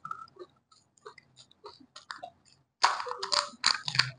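Close-up chewing and crunching of pani puri, crisp puri shells cracking among wet mouth sounds, with a louder run of crunching about three seconds in.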